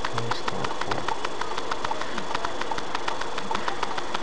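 Inside a car with the engine idling: a steady, rapid ticking, about eight clicks a second, over a low running hum.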